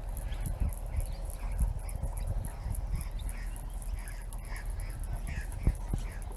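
Wind rumbling and buffeting on the microphone, with faint short bird chirps scattered through.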